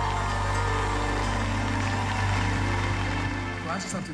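Live band music ending her saxophone number, holding a steady sustained chord over a deep bass, which cuts off abruptly near the end.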